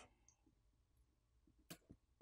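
Near silence with a faint click near the end, then a smaller one, as a metal pry tool pops a coaxial antenna cable connector off a smartphone's board.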